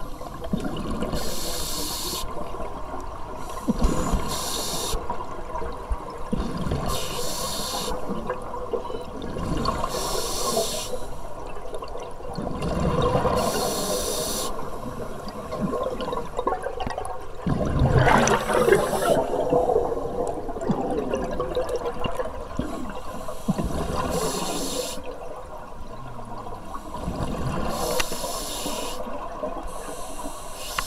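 Scuba diver breathing through a regulator underwater: a hiss on each inhalation every few seconds, alternating with the bubbling of exhaled air, with the biggest burst of bubbles about two-thirds of the way through.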